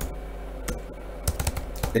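Typing on a computer keyboard: a handful of separate keystrokes at an uneven pace as a short command is keyed in.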